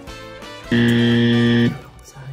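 Game-show wrong-answer buzzer sound effect. One steady low buzz about a second long, starting and stopping abruptly, marking an incorrect quiz answer.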